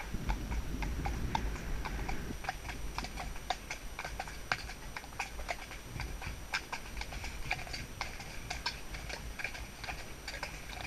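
Hooves of a 13.2hh pony clip-clopping at a steady walk, with a low rumble over the first two seconds.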